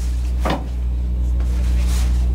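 Cloth racing flags being handled, with one short rustle about half a second in. Under it runs a steady low hum, the loudest sound throughout.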